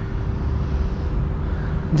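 Steady low rumble of road traffic with a faint, even hum above it.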